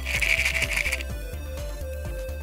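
Small hard star-shaped candies rattling in a plastic egg half as it is shaken, a short burst of about a second, over background music with a steady beat.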